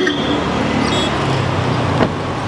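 Land Rover Defender 110's powered deployable side step extending: a low electric motor hum that drops slightly in pitch about midway, starting with a click, over a steady hiss of background noise.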